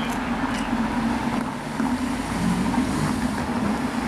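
Jaguar F-Type sports car's engine running at low revs as it drives by, a steady low drone that rises and falls slightly.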